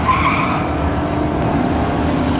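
Drag-race vehicles' engines running at the starting line, with a brief tire squeal just after the start.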